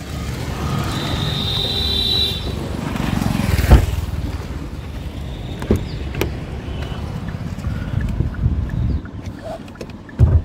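Low rumble of street traffic and handling noise as someone gets out of a car. A little under four seconds in, the car's rear door shuts with one loud thump, followed by a few lighter knocks.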